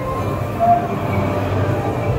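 Suspended dark-ride ship running along its overhead rail with a steady low rumble.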